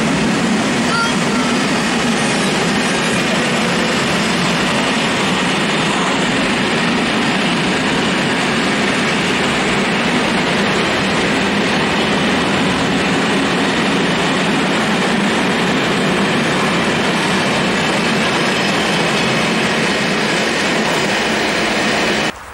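A long freight train of 32 tank wagons rolling past close by: a loud, steady rumble of steel wheels on the rails that keeps up without a break.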